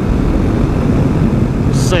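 Kawasaki KLX250SF's single-cylinder engine running steadily at highway cruising speed, mixed with wind noise on the helmet-mounted camera microphone, a steady low rumble. A voice starts right at the end.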